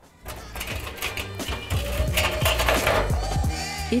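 Background music fading in after a brief pause, with a steady low bass line under a busier texture.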